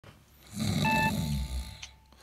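A person snoring, one long rough snore, with a short electronic phone ring beep about a second in.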